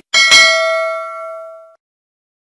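Notification-bell sound effect from a subscribe-button animation: a short click, then a bright bell chime struck twice in quick succession, ringing for about a second and a half before cutting off suddenly.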